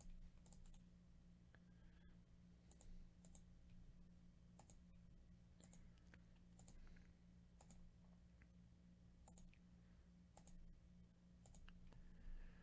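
Faint computer mouse clicks, about a dozen at irregular intervals, over a low steady hum: the button of a web page being clicked again and again.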